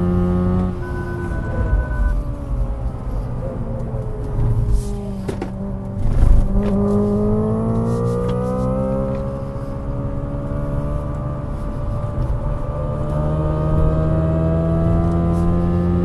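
A car's engine heard from inside the cabin on a circuit lap: its pitch falls as the car brakes and slows for a corner, with a few short knocks, then climbs steadily as it accelerates hard back up to speed. A brief electronic beep sounds about a second in.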